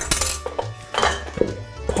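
Background music with a steady beat over metal clinks and clatter from a food mill on a stainless steel mixing bowl. Near the end the mill and bowl tip over with a clatter.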